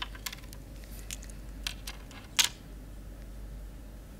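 Irregular clicks of a laptop keyboard being typed on, about eight taps spread over the few seconds, the loudest about two and a half seconds in.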